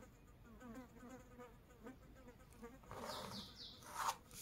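Very faint: soft repeated chirps in the background, then near the end a short scratch of a ballpoint pen ruled along a plastic ruler on paper.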